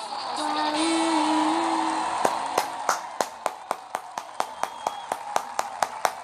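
A held closing note of the dance music with some cheering. From about two seconds in, steady rhythmic hand clapping follows, about four claps a second.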